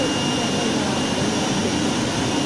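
Automatic flatbed cutting table running: a steady, even rushing noise of its vacuum hold-down blower, with a thin, steady high whine.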